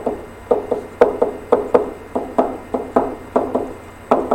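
A pen stylus tapping on a tablet, about a dozen light taps at roughly three a second, often in quick pairs. Each tap sets down one electron dot of a pair.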